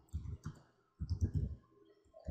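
Computer keyboard typing: two short runs of quick keystroke clicks, the second starting about a second in.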